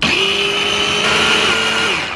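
Electric mini chopper motor switched on in a short burst to purée cooked beans, a steady high whine that starts abruptly. Near the end it dips in pitch and winds down as the button is let go.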